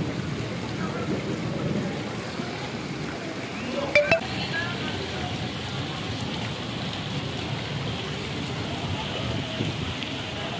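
Heavy monsoon rain falling steadily on a flooded street, a continuous wash of rain and water noise, with a short, sharp, louder sound about four seconds in.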